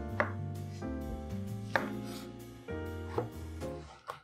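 A kitchen knife cutting through zucchini onto a wooden cutting board: three sharp cuts about a second and a half apart, over background music.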